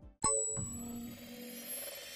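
A single bell-like ding about a quarter second in, its tones ringing on and slowly fading.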